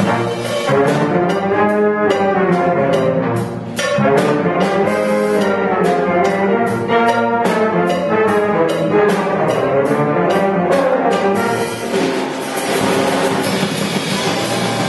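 Live jazz big band playing a loud ensemble passage led by its brass section, trumpets and trombones, over a steady drum-kit beat.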